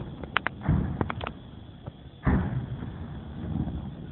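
Distant booms of Grad (BM-21) multiple-rocket-launcher fire: a deep thud about two-thirds of a second in and a louder, sudden boom a little past two seconds that dies away, with a few sharp clicks early on.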